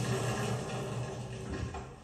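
Film soundtrack playing through home-theatre speakers in a small room, with no dialogue: a steady low background hum of ambience, fading away at the very end.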